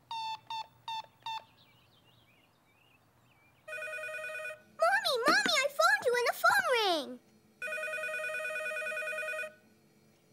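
Telephone keypad beeping four times as a number is dialled, then after a pause an electronic telephone ringing twice. Between the two rings, a loud warbling sound glides up and down in pitch.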